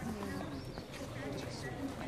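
Several people chatting as they walk along a paved street, with a few light knocks of steps.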